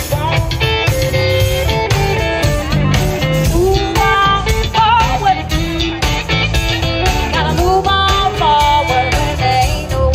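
Live blues band playing a song: electric bass and drum kit with electric guitar, loud and continuous.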